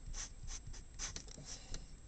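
Felt-tip marker writing on paper, a few short, faint strokes.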